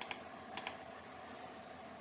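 A few faint keystrokes on a computer keyboard, with a couple of clicks about half a second in, against low room noise.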